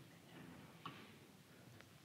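Near silence: room tone, with two faint ticks about a second apart.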